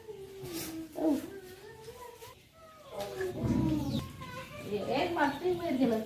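Children's voices calling and chattering in the background, with no clear words, louder in the second half.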